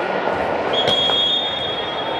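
A referee's whistle gives one long, high blast about two-thirds of a second in, over the steady hubbub of a large sports hall. A sharp smack sounds just after it starts.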